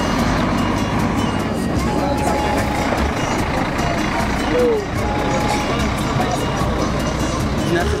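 A large coach bus's engine running with a steady low rumble, amid the chatter of a crowd of people.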